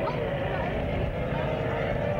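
Small ride-on karts running around a track, giving a steady motor hum, with voices in the background.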